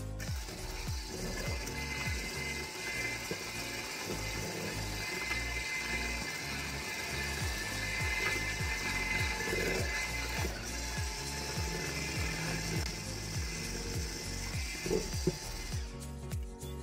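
Electric hand mixer running steadily with a high whine, its twin beaters whisking eggs, sugar and flour in a stainless steel bowl.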